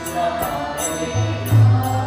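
Devotional kirtan music: a harmonium playing held chords under a chanted mantra melody, with a mridanga drum keeping the rhythm and giving deep bass strokes in the second half.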